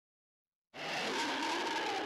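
Silence, then about three-quarters of a second in the intro of an electronic EBM track begins: a sustained, steady electronic sound with several wavering tones over a hiss.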